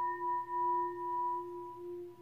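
Hand-held brass Tibetan-style singing bowl ringing on after a tap from a leather-coated mallet: a steady low hum with a clear higher overtone above it, wavering slightly in loudness as it slowly fades.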